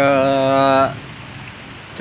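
Heavy rain falling steadily, an even hiss throughout. A man's drawn-out, steady-pitched vowel sits over the rain for most of the first second, then stops.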